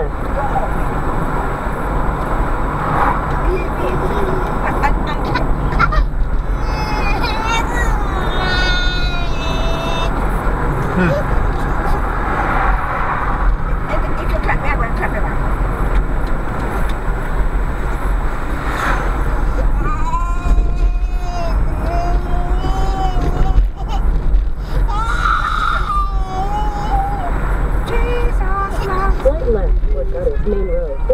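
Steady road and engine noise inside a moving car at about 33 mph, with a high-pitched voice heard in stretches, about seven seconds in and again from about twenty seconds in.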